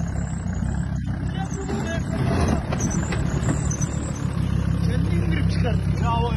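Off-road SUV engine running steadily at low revs as the vehicle crawls down a muddy bank.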